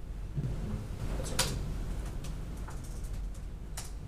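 A few scattered sharp clicks from a laptop keyboard as a command is typed and entered, with the loudest about a second and a half in and just before the end, over a steady low hum.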